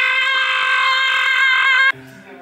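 A man screaming one long, loud note, held at a steady high pitch and cut off abruptly near the end.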